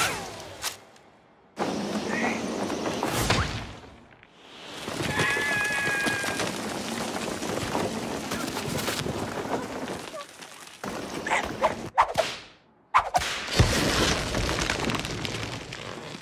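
Cartoon sound effects: a series of whooshes with thuds, starting suddenly about a second and a half in and again near the end, with brief drops to near silence between them.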